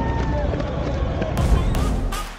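Wind buffeting a body-worn microphone while running in a crowd of race runners, with faint voices behind it. About one and a half seconds in the sound cuts abruptly to another recording, with a thump.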